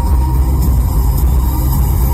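Fireworks finale barrage: many shells bursting so close together that they merge into one continuous low rumble.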